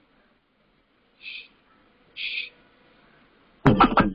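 Two short high tones about a second apart. Near the end, music from a YouTube video advert starts suddenly and loudly on the phone, with sharp strikes.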